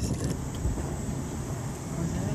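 Steady low rumble of a small passenger vehicle heard from inside its open cabin while riding: engine and road noise.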